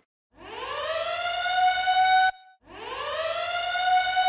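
Outdoor warning siren on a tower winding up in pitch and settling into a steady wail, which cuts off abruptly a little over two seconds in. After a brief gap it winds up again and holds its wail.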